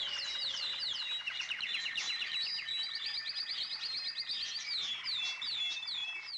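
Songbirds chirping, many quick high calls sweeping downward, several a second, with a fast rapid trill in the middle.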